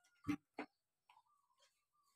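Two short hollow knocks about a third of a second apart, the first the louder, as a plastic bucket is set down on the floor and plastic buckets and a watering can are handled.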